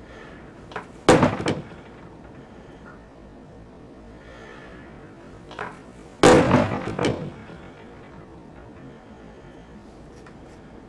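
A fist in a 3D-printed ABS knuckle duster punching a mounted pine 2x4, two sharp thuds about five seconds apart, the second louder and longer. The punch blows out the bottom of the printed finger guard.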